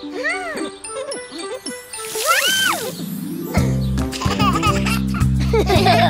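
Children's-cartoon sound effects: high tinkling chimes and two sliding pitched sounds that rise and fall. About halfway in, the instrumental of a children's song enters with a steady bass beat.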